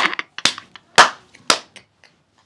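Hand claps from someone clapping while laughing: three sharp claps about half a second apart, with a few fainter ones between them.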